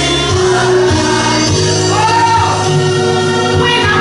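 Church choir singing gospel music, with instrumental backing holding steady low notes underneath.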